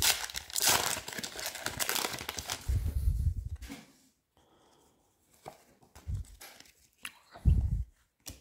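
A foil booster pack of Topps Match Attax football cards being torn open and crinkled by hand for about four seconds, then stopping, with a few short soft handling sounds near the end.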